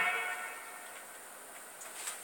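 The last note of a polka played from a 45 rpm vinyl single dies away in the first half second, followed by the faint hiss of the record's surface under the stylus.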